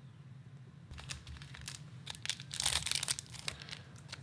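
The crinkly foil wrapper of a Magic: The Gathering draft booster pack being picked up and handled. It gives a run of short crackles and rustles that start about a second in and are loudest shortly before the end.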